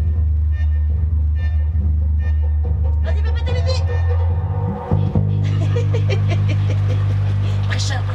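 Live dub mix with a deep, held bassline under a voice. About five seconds in, the bass briefly breaks off and comes back on a higher note.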